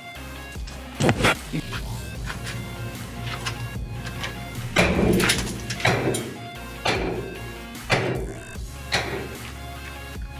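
Background music with steady tones over a hand hammer striking a sawn concrete wall: six sharp knocks, one about a second in and five more about a second apart from halfway on.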